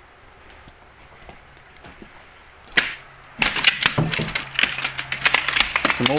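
Clothes hangers clinking and scraping along a closet rod as hanging clothes are pushed aside: a single sharp click near the middle, then a rapid, loud clatter through the last few seconds.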